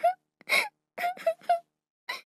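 High-pitched cartoon-style crying voice: four short sobs with gaps between them.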